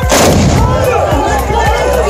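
A tbourida volley: the riders' black-powder muskets fired together in one loud blast just after the start, dying away over about half a second, with background music underneath.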